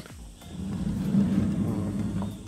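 A wooden-framed sliding mosquito screen being pushed open along its wooden track: a low, rough rumbling scrape that starts about half a second in and runs steadily.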